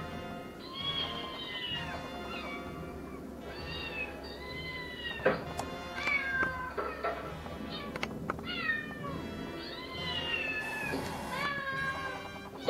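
Cats meowing on a television's soundtrack, a string of about eight drawn-out meows that rise and fall in pitch, over background music.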